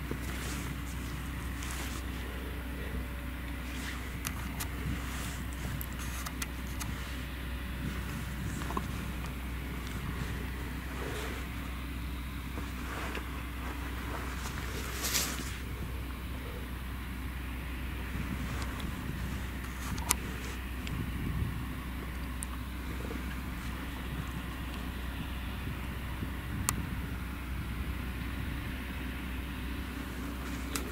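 Grimme Varitron 470 Terra Trac self-propelled potato harvester running steadily while lifting potatoes: an even low engine drone with a steady hum, and scattered short clicks and rattles, the sharpest about halfway through.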